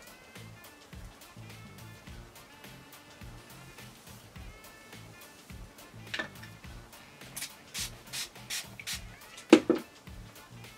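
Soft background music with a steady bass line. From about six seconds in it is joined by a run of short rustles as hair is lifted and combed through with a plastic tail comb, ending in a louder knock of handling noise just before the end.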